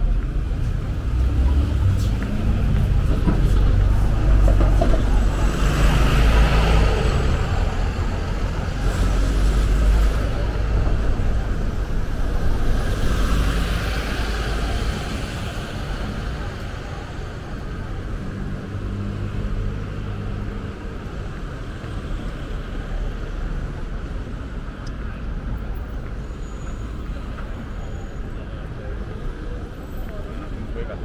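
Street traffic: road vehicles passing with a low engine rumble that swells twice in the first half and eases off after about fifteen seconds, with the voices of people nearby.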